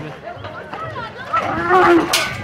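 A bull bellows once, loudly, in the last half-second or so. Voices of the onlookers can be heard beneath it.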